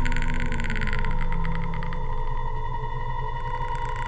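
Electronic sci-fi sound design: steady droning tones under a fast, high ticking that thins out about halfway through and comes back near the end.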